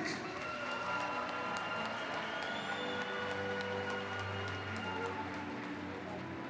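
Arena background music with long held chords, over a crowd applauding.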